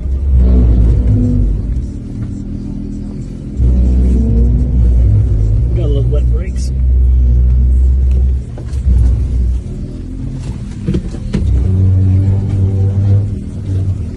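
Jeep Wrangler JK's 3.6-litre Pentastar V6 heard from inside the cab, rumbling and swelling in several long bursts of throttle with dips between as the Jeep crawls over rocks, with a few knocks.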